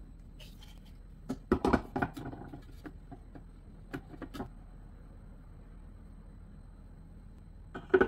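Hard plastic parts of a Braun food processor clicking and knocking as a cutting disc and the lid are handled and fitted onto the bowl: a cluster of clicks about a second and a half in, a few more around four seconds, and one sharp click near the end.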